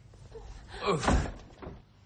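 A door slamming shut once, about a second in.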